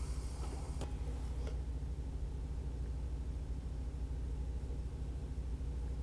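A steady low hum of room tone, with a few faint clicks in the first second and a half.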